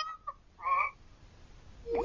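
Faint, brief voices trailing off after a goodbye. There is a short call or word about two-thirds of a second in, and another voice rising near the end.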